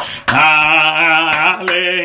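Gospel worship chorus sung, with long wavering held notes and a few sharp percussive hits underneath.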